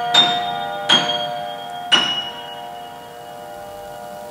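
Grand piano: three high notes struck about a second apart over a held chord, then everything rings on and slowly dies away.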